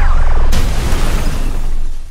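Loud trailer sound-design mix of a giant-robot battle: a heavy crash hit about half a second in over a deep, continuous rumble of blast and debris, with score underneath.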